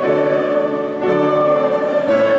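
Closing hymn music with piano accompaniment, held chords changing about once a second.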